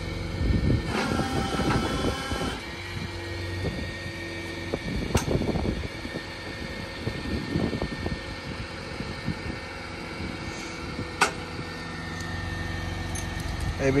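Flatbed tow truck's engine running steadily in the background while tie-down hardware clinks and clanks now and then as the car is secured on the bed. A brief whining tone sounds about a second in.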